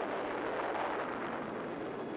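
Sustained blast noise of an atomic bomb explosion on an early-1950s film soundtrack: a dense, steady rush of noise with no tone in it.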